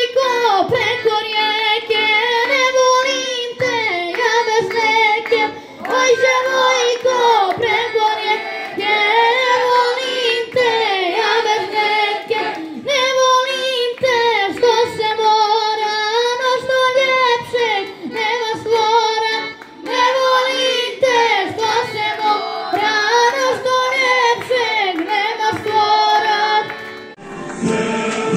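A boy singing a song into a microphone, in phrases of a few seconds with held, wavering notes, accompanied by an accordion.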